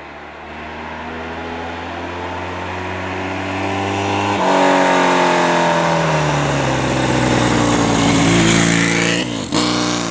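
Yamaha XS650 parallel-twin motorcycle riding up the road, its engine growing steadily louder as it approaches and its note shifting with the throttle. Near the end the note drops sharply in pitch as it goes by.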